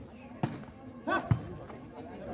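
A volleyball struck twice during a rally: a sharp slap about half a second in and a louder one about a second later, with a player's short shout just before the second. Spectators' and players' voices chatter underneath.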